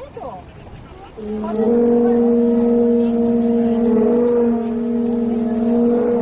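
Conch-shell trumpets (horagai) blowing long, steady notes at two different pitches together. They start again about a second in, after a short lull.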